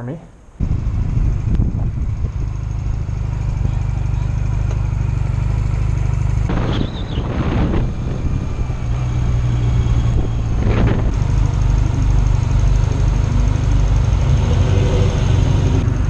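Honda Rebel motorcycle engine running steadily while riding, with road noise; it cuts in abruptly about half a second in.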